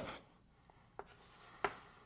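Chalk writing on a blackboard: short taps of the chalk against the board, the sharpest about one and a half seconds in, with faint scratching between strokes.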